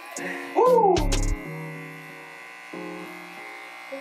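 Corded electric hair clippers with a quarter-inch guard buzzing steadily against the hair. Background music plays over it, and a brief rising-and-falling sound with a low thump comes about a second in.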